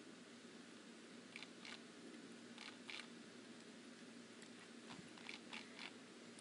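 Near silence with faint room tone and a few soft computer mouse and keyboard clicks: two pairs in the first half, then a quick run of about five near the end.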